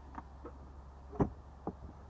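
A few light clicks and knocks from trunk trim panels being handled, the loudest about a second in and a smaller one shortly after.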